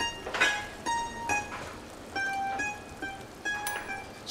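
Background score music: a plucked-string instrument picking out a melody of short, separate notes.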